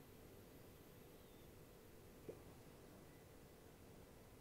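Near silence: faint room tone with a low steady hum, broken by a single small click a little past two seconds in.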